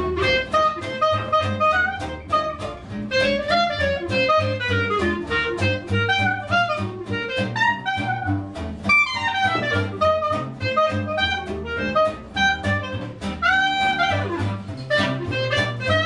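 Small hot-jazz band playing live: clarinet and trumpet over archtop guitar strumming an even beat and plucked upright bass. Quick rising and falling runs from the horns a little past halfway and again near the end.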